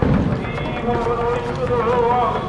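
A song: a voice singing a melody in long held notes that slide between pitches.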